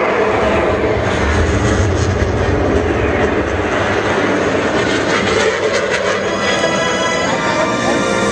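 Jet aircraft flying past low, their engine noise sweeping by in the first few seconds, over a loud orchestral music score.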